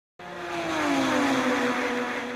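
Intro sound effect for an animated logo: a whoosh with a gliding, falling pitch like a passing race car, swelling in just after the start.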